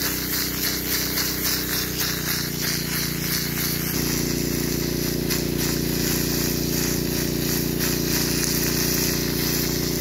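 Water cannon hose jetting a high-pressure stream of water onto landslide mud, a steady hiss over the even drone of the pump engine, whose note shifts slightly about four seconds in.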